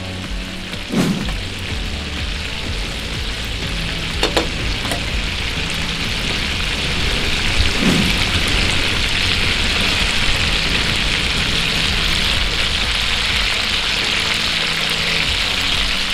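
Butterflied chicken thighs frying in hot oil in a nonstick pan: a steady sizzling hiss that grows a little louder over the second half.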